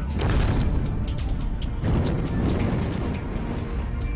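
Space shuttle main engine firing: a deep rushing roar that starts suddenly, surges again about two seconds in, and plays under background music.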